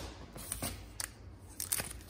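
Soft handling sounds of trading cards and a foil card-pack wrapper being picked up: scattered small clicks and rustles that get busier near the end.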